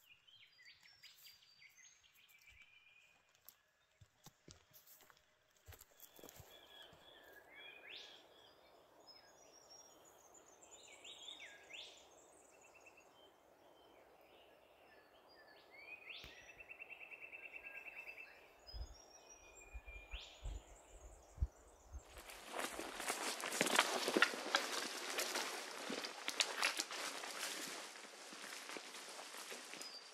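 Birds calling with chirps and a short trill over quiet bush ambience. About two-thirds of the way through this gives way to loud, crackling footsteps pushing through dry scrub and brush, which run to the end.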